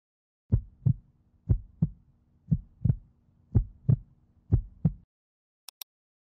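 Heartbeat sound effect: five double beats (lub-dub), about one a second, over a faint low hum, cutting off abruptly about five seconds in. Near the end come two short, sharp clicks.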